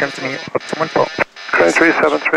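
A voice over the aircraft radio, with a faint steady high whine from the open channel under it.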